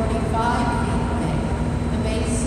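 Steady low rumble of the hydroelectric generators and water in the power plant hall, with a constant hum tone over it.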